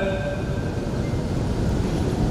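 Steady low rumbling background noise of a large hall picked up by the microphone, with the echo of the recited phrase before it dying away in the first moments.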